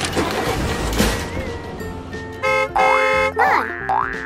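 Cartoon sound effects over background music: cheering fades over the first two seconds. Then a horn-like honk sounds twice, short and then longer, and quick rising 'boing' glides begin near the end.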